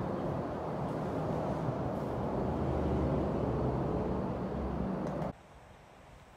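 Steady low rumble of interstate traffic passing overhead, heard from inside a concrete tunnel beneath the highway. It cuts off abruptly a little over five seconds in.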